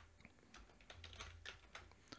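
Faint typing on a computer keyboard: a quick run of separate keystrokes.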